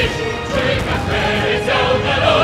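Background music: a choir singing over orchestral accompaniment.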